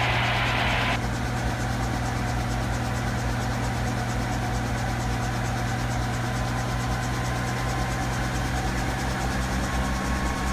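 Bell 47 G-2 helicopter's piston engine and rotor system running steadily, heard from the cockpit, as the throttle is rolled up gently toward operating RPM. A thin whine edges up in pitch near the end.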